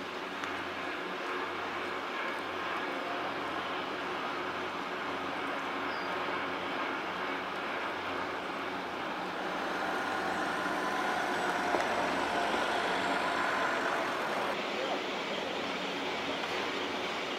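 Montaz Mautino basket lift running, its haul rope passing over the line sheaves: a steady mechanical rumble with a faint whine that grows louder for a few seconds past the middle.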